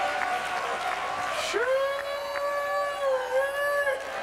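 A high voice holding one long wailing note over the noise of a worshipping congregation, sweeping up into it about one and a half seconds in and dipping slightly before the end.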